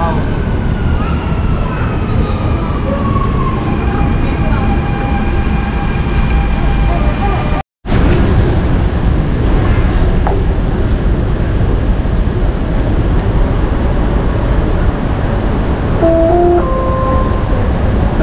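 Dubai Metro train arriving at the platform, the whine of its electric motors falling in pitch as it slows over a heavy rumble. After a cut, the steady low rumble of the train running, heard from inside the carriage, with a short two-note rising chime near the end.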